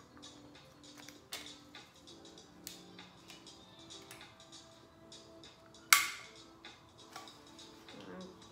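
A stapler pressed down hard on a thick stack of card pages, with small handling clicks and one loud sharp snap about six seconds in. The stapler is jammed and does not drive a staple. Soft background music with repeating notes plays under it.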